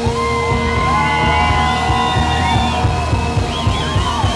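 Deutschrock band playing live, drums and bass driving steadily under long held high notes.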